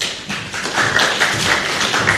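A room of people applauding: a dense patter of clapping and tapping breaks out suddenly and holds steady, in approval of the announcement just made.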